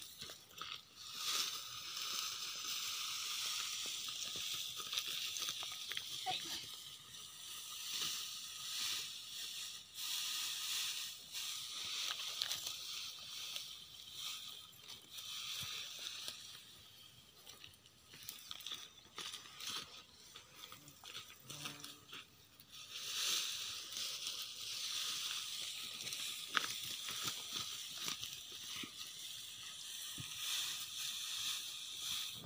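Dry harvested crop stalks rustling and crunching as they are trodden on, gathered and lifted into bundles, in many short crackles over a steady high hiss.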